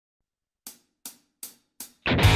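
A four-beat count-in: four short, sharp ticks, evenly spaced a little under half a second apart, marking the tempo just before the band comes in.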